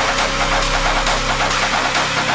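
Electronic dance music in a build-up: the heavy bass is pulled back while a thin tone slowly rises in pitch over a fast, even ticking rhythm.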